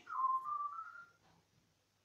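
A short whistled jingle, a single clear tone stepping upward in pitch over about a second, closing a TV advert. It is heard through a television's speaker.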